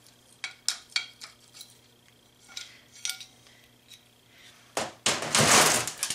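Steel VW swing-axle parts clinking and tapping as the axle end and its greased fulcrum plates are worked into the transaxle side gear: a string of sharp separate clicks in the first three seconds. About five seconds in comes a loud, longer scraping noise of metal on metal, the axle shaft being slid onto the steel workbench.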